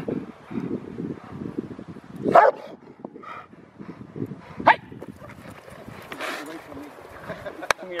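Rottweiler barking during bite-work training, with two sharp barks about two and a half and four and a half seconds in.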